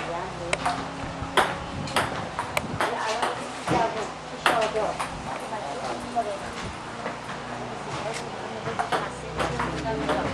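A table tennis rally: the ball clicks sharply off the bats and the table in quick, uneven taps, roughly one to two a second.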